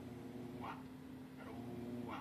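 A faint steady low hum, with two brief faint higher sounds about a second apart.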